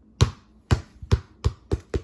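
Umbro Neo Swerve size 5 football bouncing on a wooden floor: six thumps, the gaps shortening and each one quieter than the last, as the ball comes to rest.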